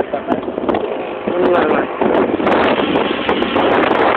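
Wind and road noise in a moving vehicle, denser and louder from about halfway through, with a voice heard briefly in the mix.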